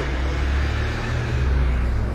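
A road vehicle's engine running nearby with a steady low rumble.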